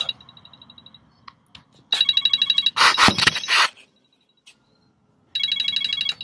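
Socket ratchet clicking in quick metallic runs as a bolt is cranked into the engine block's fuel-pump mounting hole to clean out its dirty threads. The first run is faint, then come two loud runs, about two seconds in and again near the end.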